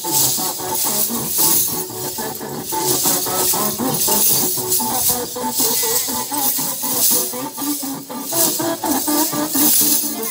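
Lezims, wooden frames strung with small metal cymbals, jingling in a steady beat as a group of dancers shake them together, over a recorded Hindi film song.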